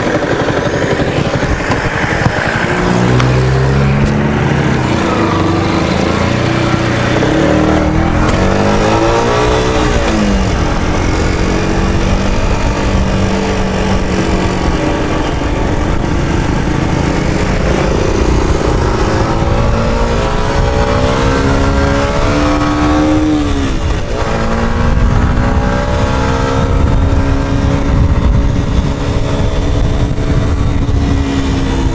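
125 cc sport motorcycle engine revving hard and accelerating, its pitch climbing and then dropping back at each gear change, several times over, with wind noise rushing over the helmet microphone.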